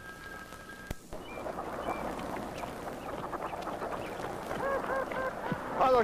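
Waterfowl, geese and ducks, honking and quacking in a busy flock, the calls growing louder toward the end. A steady high two-note tone cuts off with a click about a second in.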